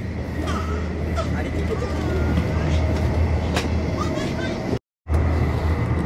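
Cabin noise of a Haramain high-speed train running: a steady low rumble with faint passenger chatter, cutting out for a moment about five seconds in.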